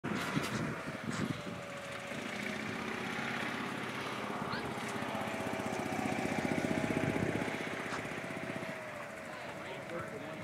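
A small engine running steadily in the background, growing louder to a peak about seven seconds in and then fading, as if passing by.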